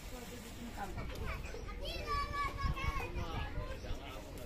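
Children's voices calling and chattering in the background over a low steady rumble, with no clear words.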